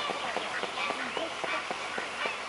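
A mute swan splashing across the water with wings raised, feet paddling at the surface. Over it come many short honking and quacking calls of waterfowl.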